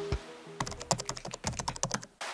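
Computer keyboard typing sound effect: a rapid, irregular run of key clicks starting about half a second in, as background music fades out under it.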